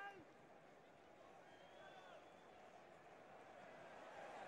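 Near silence: faint, steady football-stadium crowd noise under a pause in the TV commentary.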